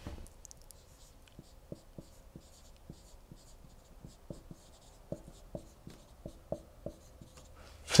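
Dry-erase marker writing on a whiteboard: a faint, irregular series of short taps and strokes of the marker tip as letters are written.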